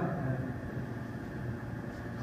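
Room tone: steady low background hum and hiss, with no distinct event.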